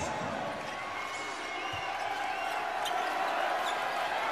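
Basketball arena sound during play: a steady murmur of the crowd, with a ball being dribbled on the hardwood court and faint sneaker squeaks.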